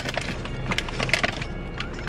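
A plastic tortilla-chip bag crinkling as a hand reaches in and pulls out a chip: a run of sharp crackles, loudest near the start and again about a second in.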